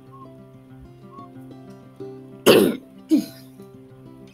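A person coughing twice, about two and a half seconds in, the first cough loud and the second shorter, over soft instrumental background music with sustained notes.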